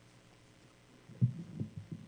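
A stand-mounted microphone being handled and adjusted, giving a string of irregular low thumps and bumps starting about a second in.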